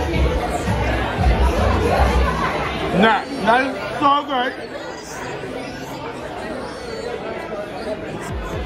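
Restaurant background of chatter and music, with a deep bass line for the first three seconds. Between about three and four and a half seconds in, a voice rises and falls sharply in pitch, then the background goes on more quietly.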